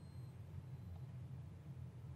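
High-voltage arc generator module (a cheap '1000 kV' step-up coil) squealing faintly, a thin high whine that fades out about half a second in, without striking an arc across its output gap. A faint low hum lies under it.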